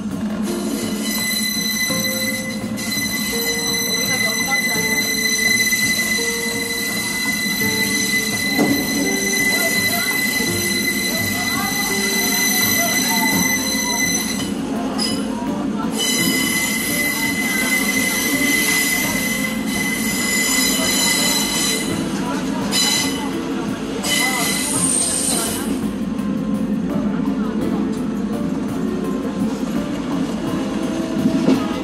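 Train running slowly along the track with a high, steady squeal from its wheels on the rails over a low running drone. The squeal holds for long stretches and breaks off a few times in the second half.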